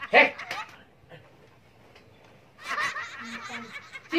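Short bursts of a person's voice that sound like laughing: a loud one right at the start, a near-quiet pause, then a longer run of laughter-like sound near the end.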